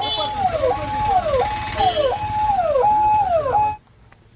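Emergency vehicle siren sounding a repeating wail: a held high note that slides down in pitch, about every two-thirds of a second, over low vehicle engine rumble. It cuts off abruptly near the end.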